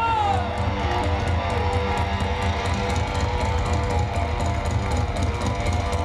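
Hard rock band playing live: distorted electric guitars, bass and drums with steady cymbal hits. A long held note slides down in pitch over the first second and a half.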